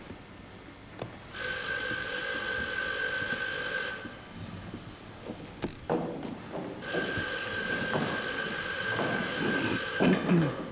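Telephone ringing twice, each ring lasting about three seconds, with a few knocks between the rings.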